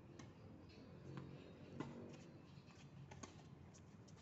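Faint, sharp knocks of a tennis ball being struck by rackets and bouncing on a hard court during a rally, a handful spread irregularly, the loudest about halfway through.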